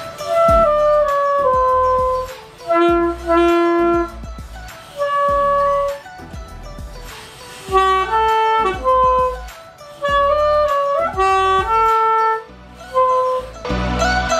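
Alto saxophone played by a beginner after a first short lesson: a simple melody of held notes in short phrases, mostly stepping downward, with brief pauses between them. A backing track with a steady bass line plays underneath.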